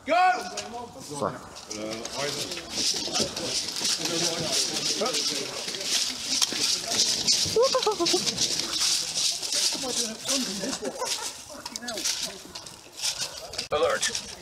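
Footsteps and the rattle of carried gear as players move on foot, with laughter and scattered voices.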